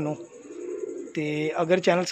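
A domestic pigeon cooing low and briefly, a single coo of under a second in the first half.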